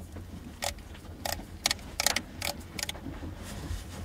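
Leica M8 digital rangefinder body handled in gloved hands: a string of about seven short, sharp clicks, irregularly spaced, over a couple of seconds.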